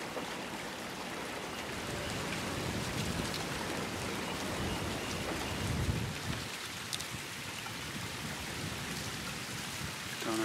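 Shallow creek water running and trickling with a steady rushing noise, with a low rumble swelling up about three seconds in and again near six seconds.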